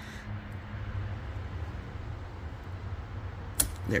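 A low steady hum with faint fingertip handling on plastic, then one sharp click near the end as the side-mirror wiring connector unlatches from its socket.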